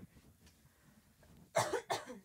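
A person coughs, two quick coughs about one and a half seconds in, after a near-silent pause.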